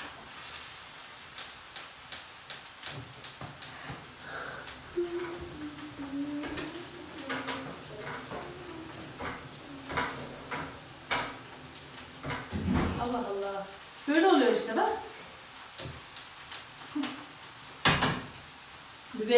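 Green peppers frying in a pan with a steady sizzle. A cooking utensil clicks and taps against the pan again and again as they are stirred, most often in the first few seconds.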